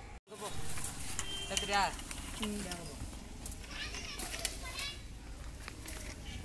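People's voices talking, with a brief total cut-out in the sound just after the start.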